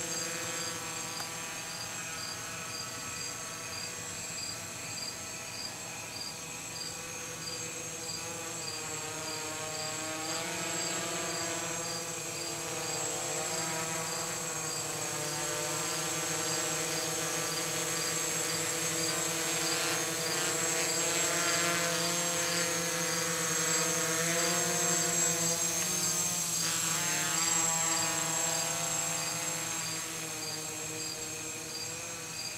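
Gaui 330X electric quadcopter hovering, its motors and propellers making a whine whose pitch wavers up and down as the throttle is worked, louder in the second half. Crickets chirp steadily behind it.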